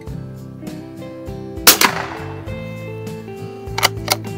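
A single .22 LR rifle shot from a Winchester 52D bolt-action target rifle firing Federal AutoMatch, one sharp crack about one and a half seconds in, over background music. Two shorter sharp sounds follow near the end.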